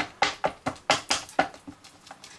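Embossing ink pad dabbed repeatedly onto clear flower stamps mounted on a stamp platform's acrylic plate: a quick run of light taps, about four a second.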